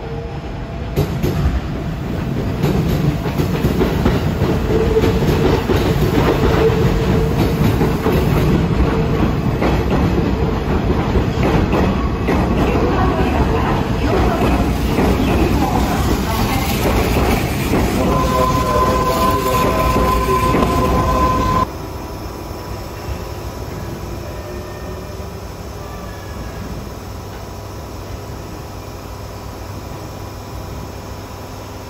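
Electric commuter train running in over the station's points and crossings, its wheels clattering loudly, with a steady high squeal for the last few seconds. About twenty-two seconds in, the sound drops abruptly to a quieter steady station hum.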